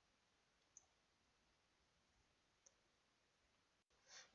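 Near silence with two faint, short clicks about two seconds apart, as from computer input.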